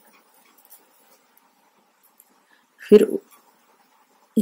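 Near silence with a few faint ticks of metal knitting needles, then one short vocal sound about three seconds in.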